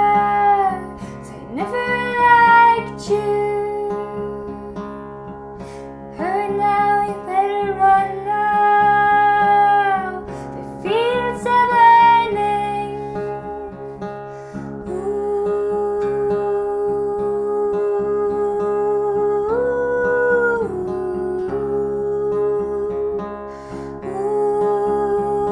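A woman sings long, drawn-out notes over a fingerpicked acoustic guitar. One note is held for several seconds in the second half and steps up briefly near the end.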